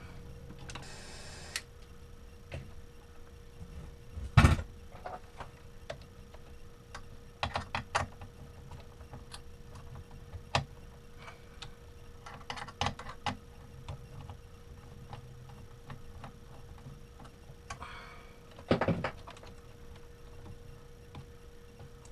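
Scattered sharp clicks and snaps of hand tools on electrical wire, as wire cutters clip the wires to length; the loudest snap comes about four seconds in. A faint steady hum runs underneath.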